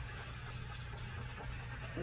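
Small handheld butane torch running steadily over the wet acrylic pour, a constant hiss over a low hum.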